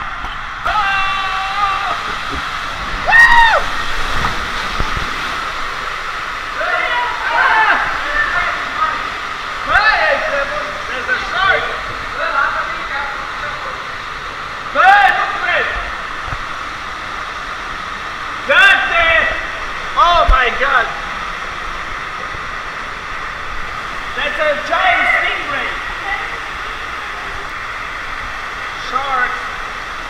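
Water rushing steadily down a tube water slide, with a rider's wordless yells and whoops breaking in loudly several times.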